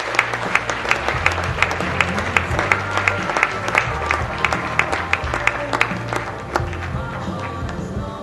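Audience applause with music playing over the hall's sound system. The clapping thins out about three-quarters of the way through while the music carries on.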